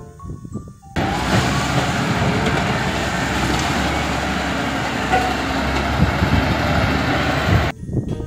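A large wheel loader working at a demolition site, its diesel engine running hard as the bucket pushes a load of concrete slabs and rubble. The noise starts abruptly about a second in and cuts off just before the end.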